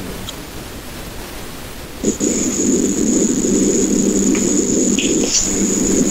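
A loud, even rushing noise like static starts abruptly about two seconds in and cuts off shortly before the end, over a faint steady hiss.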